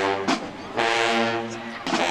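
Marching band brass playing loud, long held chords, two in a row, each followed by a short break marked by a sharp drum hit.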